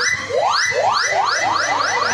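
Electronic sound effect: a rising pitch sweep repeated over and over, each a quick upward glide, coming faster and faster, about eight in two seconds.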